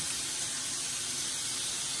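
Steady sizzling hiss of beef and shrimp frying in a hot pan.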